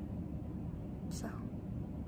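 A pause in a woman's talk: steady low room noise, broken about a second in by one softly spoken word, "so".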